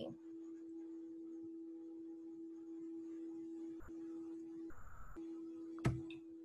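A steady low electronic hum with fainter overtones on the call audio, broken twice for a moment, with a short burst of noise about five seconds in and a sharp click near the end.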